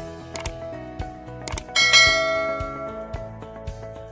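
Background music overlaid with a subscribe-button animation sound effect. A couple of short clicks are followed, just under two seconds in, by a bright bell chime that rings out and fades.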